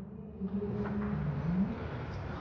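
Dry-erase marker writing on a whiteboard, a faint scratching, over a low steady hum.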